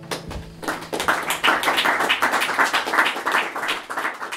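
Audience applauding at the end of a song, building from about half a second in, as the last acoustic guitar chord dies away at the start.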